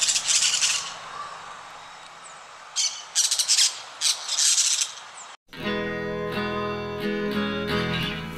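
Parakeets calling in three bursts of harsh, high screeching over a steady background hiss. The bird sound cuts off suddenly about five and a half seconds in, and plucked acoustic guitar music begins.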